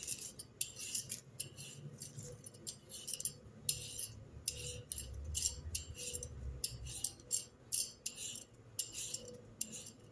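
Metal hand peeler scraping the skin off a raw potato in short, repeated strokes, about two a second.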